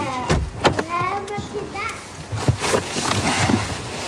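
Indistinct children's voices: short high calls without clear words, mixed with several sharp knocks and clatters.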